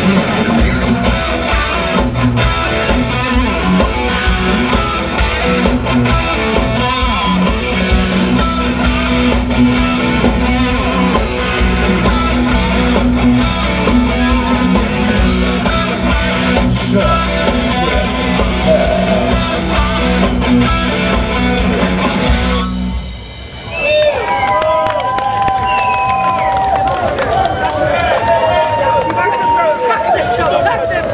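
A live rock band plays electric guitar, bass guitar and drums at full volume. The music cuts off abruptly a little over twenty seconds in, and a voice follows over a quieter background.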